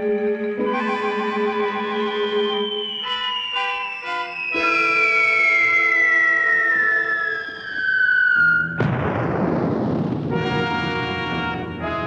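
Dramatic orchestral score with held brass chords, over which a long electronic whine falls steadily in pitch and ends about nine seconds in with a sudden loud crash and rushing noise: the sound effect of a meteorite-like object plunging down and landing. The chords resume after the impact.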